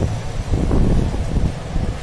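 Wind buffeting the microphone: a low, uneven rumble.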